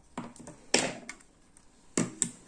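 Handling of a small plastic alarm sensor: a light click, a short rustle about a second in, and a sharp click near the end.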